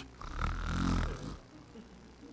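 A man imitating a snore: one rough, buzzing snore lasting about a second, acting out the disciples sleeping.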